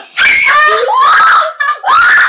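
A boy screaming loudly in two long, high-pitched shrieks, the second starting near the end.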